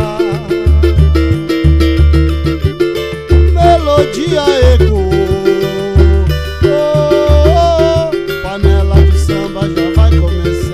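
Live samba from a small acoustic group: a large barrel hand drum beats a low stroke about once a second under a strummed cavaquinho and a pandeiro, with a melody sliding up and down around the middle.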